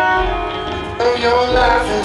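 Live band music with a man singing, heard from far back in an outdoor concert crowd. A louder phrase starts about a second in.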